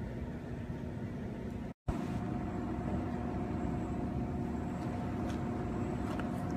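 An engine running steadily, a low rumble with a constant hum, with the sound cutting out completely for an instant about two seconds in.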